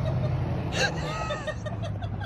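Steady low rumble of outdoor street background, with faint voices and a short higher sound about a second in.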